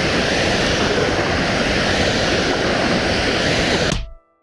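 Steady rush of floodwater spilling over a reservoir dam's spillway, heard across open water; it cuts off suddenly at the end.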